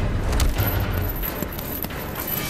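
Fight sound effects from a stop-motion film's soundtrack: a continuous scuffle with a metallic jangle and a few sharp clicks.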